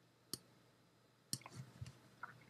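Two short, sharp clicks about a second apart in otherwise near silence: a computer mouse button being clicked.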